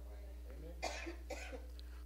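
Faint coughing about a second in, over a steady low hum.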